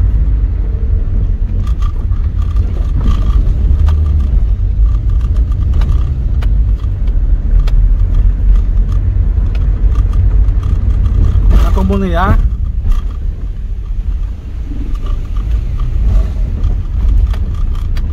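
Car driving on an unpaved dirt road, heard from inside the cabin: a steady low rumble of tyres and engine with scattered light clicks and knocks from the rough surface. A brief voice sounds about twelve seconds in.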